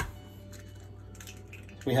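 A sharp crack of an eggshell being broken right at the start, followed by faint room tone with a low steady hum until a man starts speaking near the end.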